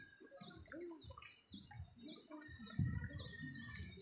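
A bird faintly repeats a short, high chirp over and over, about two to three times a second. A few soft low knocks come through around three seconds in.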